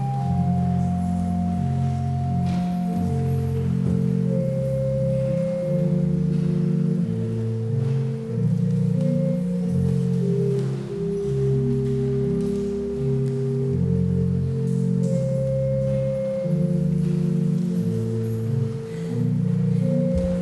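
Church pipe organ playing slow, held chords over a sustained bass line, the chords changing every second or two.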